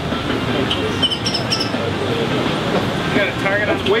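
Indistinct chatter of several people talking at once over a steady background noise.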